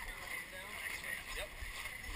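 Indistinct chatter of several people nearby, over a low, steady rumble.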